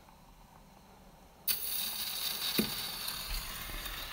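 The needle of an HMV 157 acoustic gramophone's soundbox drops onto a spinning 78 rpm shellac record about a second and a half in, then runs in the lead-in groove with steady surface hiss and crackle and one sharp click a second later.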